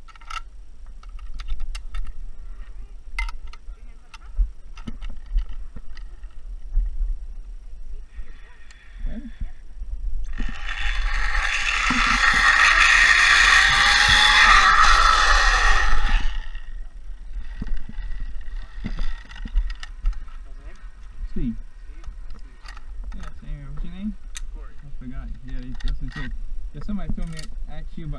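Zipline trolley running along a steel cable: a loud rushing whir for about six seconds, with a whine that rises in pitch as it picks up speed. Sharp metal clicks from the trolley and carabiners come before and after it.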